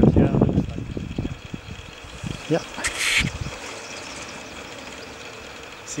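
Steady outdoor wind noise with a faint high steady hum, heaviest in the first second, and a short hiss about three seconds in.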